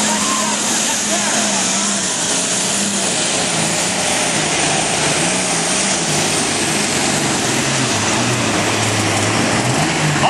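A modified pulling tractor of about 2,800 horsepower running flat out under load as it drags the pulling sled, a loud steady roar with a high whine over it. Its engine note drops lower over the last few seconds.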